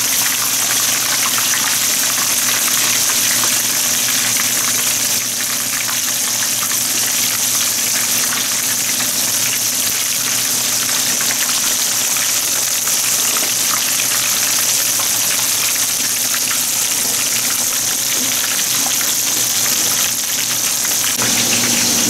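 Whole fish deep-frying in a wok of hot oil: a steady, dense sizzle with fine crackling from the vigorously bubbling oil.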